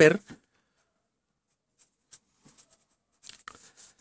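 Marker pen writing on paper: faint, short scratching strokes in the second half.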